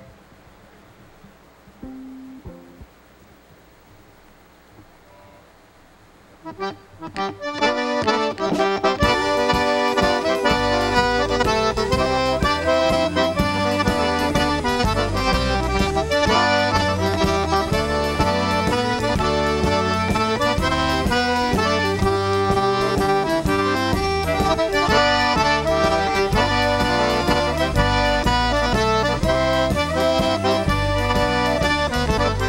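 Cajun button accordion starting a tune after a few quiet seconds, about seven seconds in, with the rest of the band coming in underneath with bass and drums a few seconds later.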